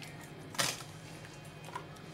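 Hands turning a piece of beef in its wine marinade in a stainless-steel bowl, with one short wet squelch about half a second in, over a faint steady low hum.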